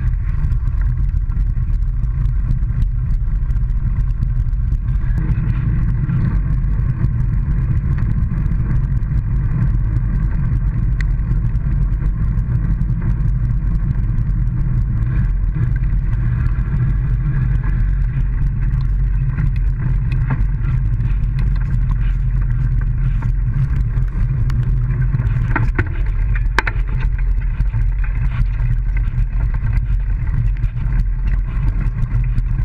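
Steady low rumble of a handlebar-mounted camera riding along a park path: tyre noise and wind on the microphone, with a few sharp knocks near the end.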